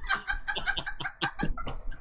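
People laughing, a quick choppy cackle.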